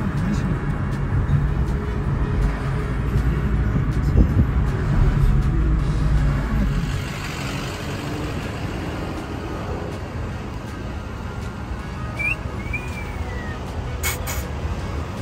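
A car's road and engine rumble heard from inside the cabin while driving, which eases off about seven seconds in to a quieter, steady traffic hum. A couple of brief high chirps come near the end.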